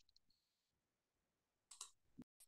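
Near silence: room tone, with a couple of faint short clicks near the end.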